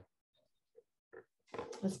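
Near silence for about a second and a half, broken only by a couple of faint, very short sounds, then a woman starts speaking near the end.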